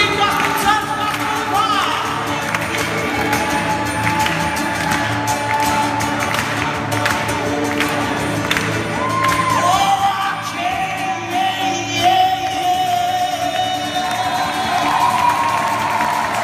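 Live song with acoustic guitar and a gospel choir singing. In the second half a voice holds long sustained notes.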